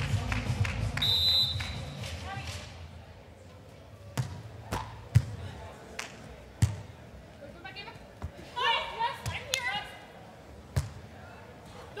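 A volleyball being struck by players' hands and arms during a rally: a string of sharp single smacks, several seconds apart, the loudest about five seconds in. It opens with the tail of a short transition sting with a brief high tone.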